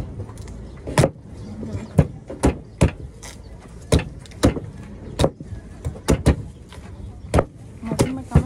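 A large cleaver-style knife chopping into the husks of green coconuts to cut them open. It lands as about ten sharp strikes at uneven intervals.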